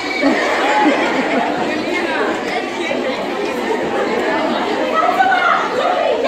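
Many schoolgirls talking at once: a steady, loud babble of overlapping voices with no single voice standing out.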